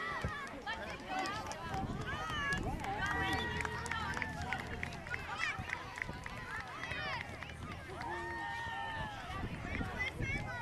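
Many young children's high voices calling and chattering over one another, some calls held out, with no clear words.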